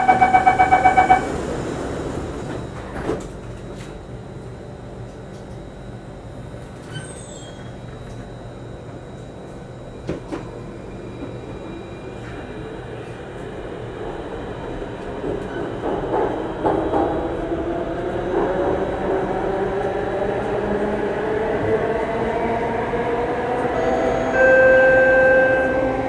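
Fast pulsed door-closing beeps in the first second or so, then a Singapore MRT Circle Line train running with a steady rumble. From about halfway through, its motor whine rises slowly in pitch as it picks up speed. A short chime sounds near the end.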